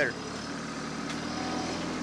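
TYM T264 subcompact tractor's diesel engine running steadily.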